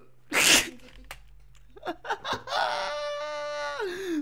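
A person's voice: a sudden loud, sneeze-like burst of breath about half a second in, then a few short vocal sounds and one long held vocal sound at a steady pitch that drops at its end.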